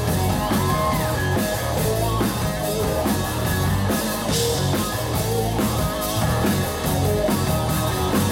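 A rock band playing live: electric guitars, bass guitar and drum kit, with a bright cymbal crash about four seconds in.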